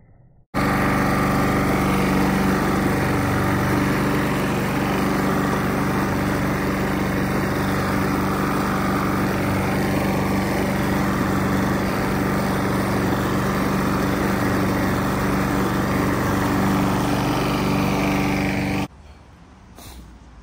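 Petrol walk-behind lawn mower running at a steady, even speed while mowing grass. The sound starts abruptly about half a second in and cuts off suddenly near the end.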